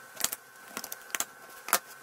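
A handful of sharp plastic clicks and taps from a clear plastic diamond-painting drill storage box and a drill tray being handled, the loudest click near the end.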